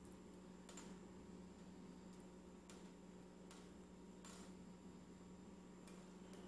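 Near silence: room tone with a steady low hum and about five faint, short ticks scattered through.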